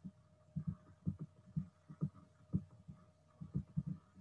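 Faint, soft low thumps at uneven spacing from pen strokes on a writing tablet, over a faint steady hum.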